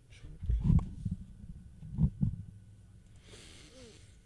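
Low thumps picked up close on a studio microphone, one cluster about half a second in and a double thump around two seconds in, followed near the end by a short breathy exhale into the mic.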